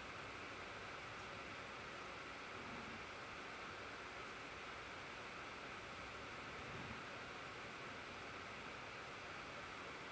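Faint steady hiss of room tone and microphone noise, with no distinct events.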